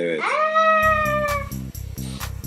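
A single cat meow that slides up in pitch and is held for about a second and a half. Background music with a steady beat comes in under it about a second in.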